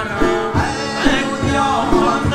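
Badakhshani folk music played live: a male voice singing over plucked long-necked lutes, a harmonium, and frame drum strikes about every half second.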